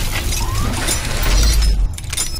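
Cinematic logo-reveal sound effects: a dense, glassy shattering noise over a deep bass rumble that swells about a second in and cuts off suddenly near the end.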